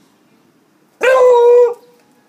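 A beagle barks once, a single loud, steady-pitched bark held for about two-thirds of a second, starting about halfway through.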